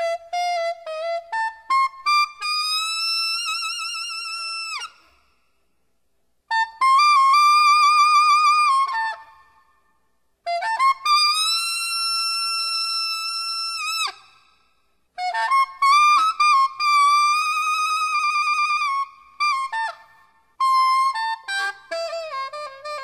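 Unaccompanied alto saxophone playing a single high melodic line of long, held notes with wide vibrato, in phrases broken by short silences.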